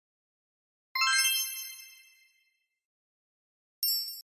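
A bright chime sound effect rings out about a second in and dies away over about a second; a second short bright chime starts just before the end.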